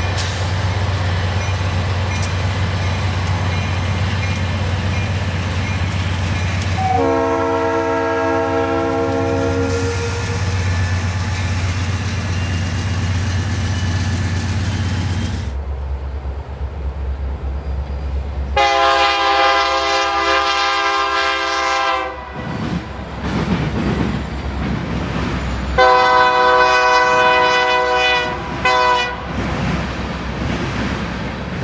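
Diesel freight locomotives passing. The first runs with a steady low engine rumble and gives a multi-note horn blast of about three seconds, about seven seconds in. After a change of scene, a second freight's locomotives sound two long horn blasts, the second followed by a short one near the end.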